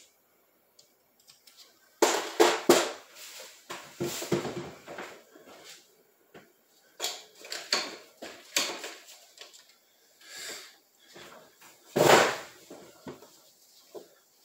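Metal hand tools and brake cylinder parts knocking and clattering on a metal workbench during disassembly: a run of separate clinks and knocks, the loudest one near the end.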